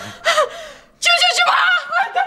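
A woman gives a startled gasp ("ah!"), and about a second in she breaks into a loud, high-pitched shout of alarm.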